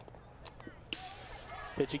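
A softball bat strikes a pitch once, a short sharp crack, and about half a second later the foul ball hits the chain-link backstop behind home plate, a rattle lasting under a second.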